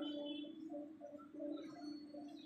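Birds calling: a low, repeated note with short higher notes scattered above it.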